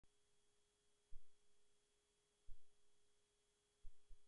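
Near silence with a faint steady electronic tone and three soft low thumps.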